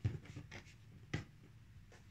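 A sheet of paper being handled and settled flat by hand, with soft rustles and a short sharp tap a little over a second in.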